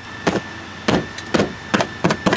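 Four sharp knocks about half a second apart, from a small metal survival multitool being handled and knocked against something.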